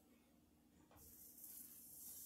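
Faint sizzling of corn on the cob under the hot lid of a Tupperware Micro Pro Grill. It starts abruptly about a second in as the lid goes on and carries on as a steady high hiss.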